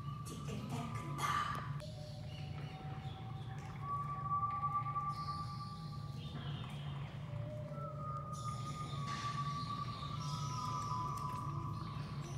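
Vocal soundscape: a continuous low drone with long, steady high tones that come and go over it, two or three overlapping near the end.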